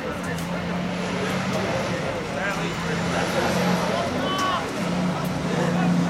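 Players' shouts from a youth football match, short calls about two and a half and four and a half seconds in, over a steady outdoor noise and a low hum that comes and goes.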